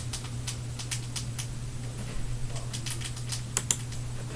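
Scattered clicks of a computer mouse and keyboard over a low steady hum, with a quick double click near the end the loudest.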